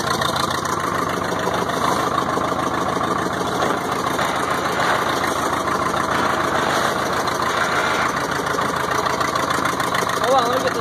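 Caterpillar RD4 bulldozer's diesel engine idling steadily, running again after standing for 20 years.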